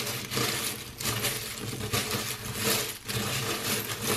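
A hand rummaging through a pot of small charms, mostly wooden letter tiles and beads, making a continuous rattling clatter of many small clicks.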